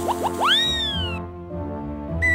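Background music with a comic cartoon sound effect laid over it: a few quick rising chirps at the start, then one long whistle-like glide that rises and falls back, ending a little past the first second.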